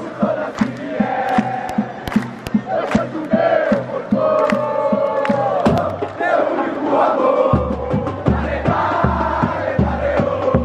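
A football supporters' drum section (bateria) beats a steady rhythm while a large stadium crowd chants in unison. Deep bass-drum strokes join in after about seven seconds.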